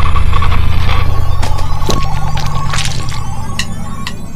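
Instrumental band music with no singing: a held low bass drone and a steady higher tone, with a few sharp hits scattered through it, fading a little toward the end.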